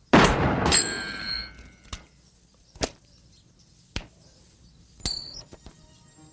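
A loud metallic clang just after the start, ringing on for about a second, then four short knocks spaced about a second apart, the last with a brief ring.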